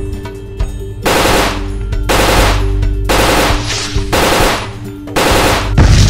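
Bursts of automatic gunfire, five bursts of about half a second each, roughly a second apart, over a steady low hum. A louder explosion goes off just before the end.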